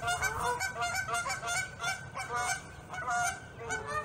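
A flock of geese honking: a dense, continuous run of short, overlapping calls that eases off a little in the middle.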